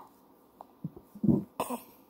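A man coughs, a few short coughs about a second in, the middle one loudest.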